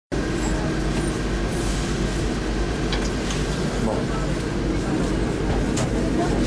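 Coach bus engine and running noise heard from inside the passenger cabin: a steady low rumble with no change in level.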